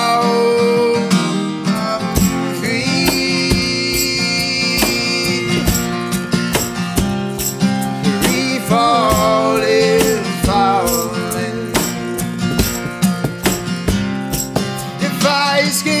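Acoustic guitar strumming with a cajon knocking out a steady beat, with a sustained melody line over them: an instrumental stretch of an acoustic pop song.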